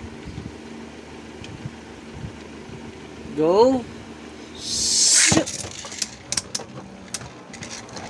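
Two Beyblade launchers ripped at once about five seconds in, a loud rasping zip lasting under a second, followed by the spinning tops landing and clacking against each other and the plastic stadium in scattered sharp clicks.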